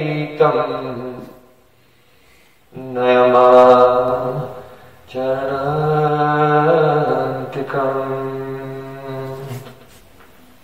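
A man's voice chanting a devotional invocation in long, drawn-out notes. One phrase fades out about a second in, then two long held phrases follow, and the last dies away near the end.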